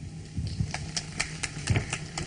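Light, scattered audience applause: single claps a few times a second, over a low steady hum.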